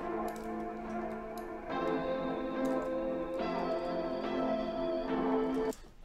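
Dark drill melody played back from a bounced sample pitched down a semitone (a hundred cents), with sustained chords changing about every second and a half. It stops suddenly near the end.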